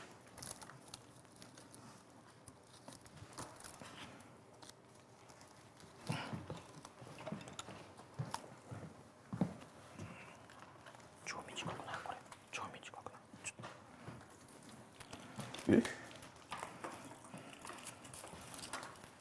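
Quiet handling noise of bonsai wire being wrapped onto a pine branch by hand: scattered light clicks and rustles of wire and pine needles, with a few brief louder knocks.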